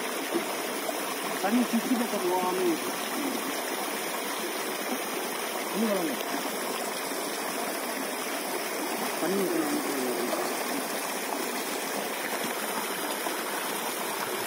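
Steady rushing noise of running water, with faint voices in the background.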